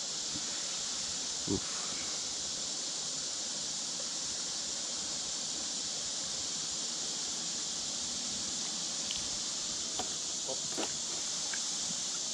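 A steady, high-pitched drone of an insect chorus. There is one soft knock about a second and a half in, and a few faint clicks near the end.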